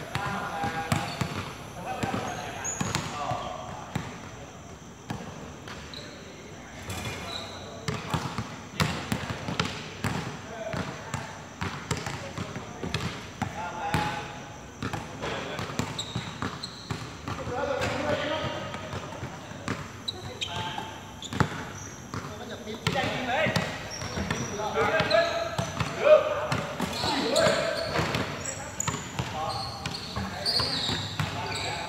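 A basketball bouncing and being dribbled on a hard court, in repeated sharp thuds, with players' voices calling out on and off, more often in the second half.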